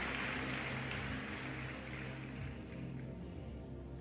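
Soft background music with low notes held steadily, under applause and crowd noise from the congregation that fades away over the few seconds.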